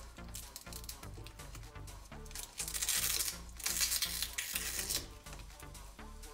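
Background music with a steady bass beat. About two and a half seconds in come two bursts of scratchy noise, each about a second long, as the stretch-release adhesive pull tab under a Xiaomi Redmi Note 11 Pro+ 5G battery is peeled up.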